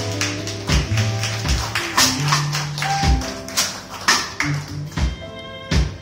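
Live funk-soul band playing an instrumental passage without vocals: drum-kit hits, sustained bass guitar notes, and electric guitar and keys lines over them.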